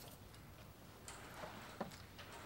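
Faint mouth sounds of a woman eating a mouthful of noodles, with a soft slurp about a second in and a small click near the end.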